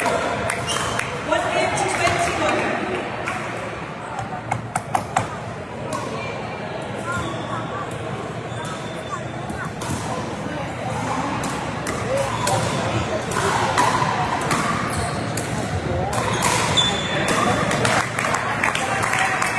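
Pickleball paddles striking the hollow plastic ball in rallies: a run of sharp pops, with a quick cluster about four to five seconds in. Players' voices and calls from the surrounding courts of a large sports hall run underneath.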